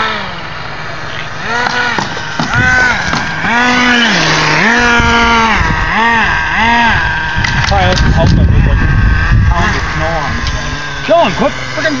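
Small nitro (two-stroke glow) engine of an HPI RC truck, blipped repeatedly: each burst of throttle rises and falls in pitch, dropping back to a steady idle in between. A few seconds of rushing noise comes about eight seconds in.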